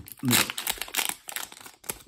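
Foil Pokémon booster pack wrapper crinkling and crackling in the hands as it is gripped at the top edge to be torn open.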